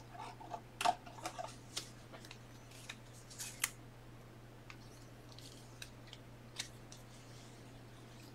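Trading cards and a rigid plastic top loader being handled: scattered light clicks and short rustles, busiest in the first two seconds and again about three and a half seconds in, over a steady low hum.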